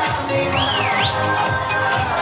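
Loud dance music with a steady beat, playing on a party dance floor. About half a second in, a high pitch swoops down and back up over the music.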